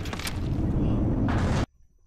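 Battle sound effects from an animated episode: a dense, rumbling explosion-and-machinery din that cuts off suddenly about one and a half seconds in.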